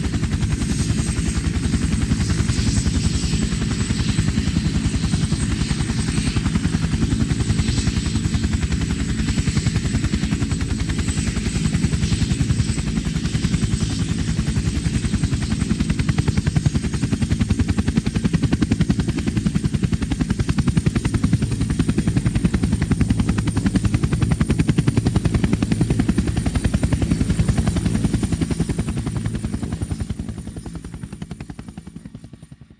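Helicopter rotor sound: a steady, dense low chopping with a thin, steady high whine above it.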